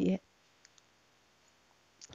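The last syllable of a spoken word, then near silence broken by a few faint, short clicks: a pair about two-thirds of a second in and a brief cluster at the very end.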